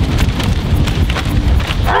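Wind buffeting the microphone on a moving boat, a heavy uneven rumble, with a paper map crackling and flapping in the wind.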